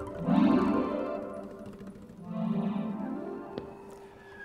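Soft acoustic instrumental music from classical guitar, double bass and accordion: two sustained phrases that swell and fade away.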